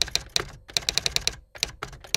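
Typing sound effect: rapid key clicks in short runs with brief pauses, keeping time with on-screen text being typed out.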